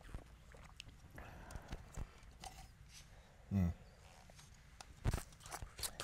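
Faint sipping and swallowing of water from plastic cups, with small mouth and cup clicks and a short hummed "mm" that falls in pitch about three and a half seconds in.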